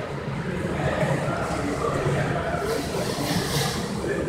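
Steady workshop background noise with a low hum, like machinery or ventilation running in a large shop.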